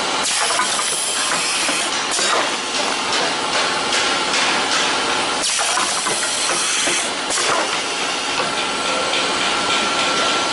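VD156C rotary K-cup capsule filling and sealing machine running: a steady mechanical hiss with a faint steady high whine. Stretches of brighter, sharper hiss come and go, near the start and again about halfway through.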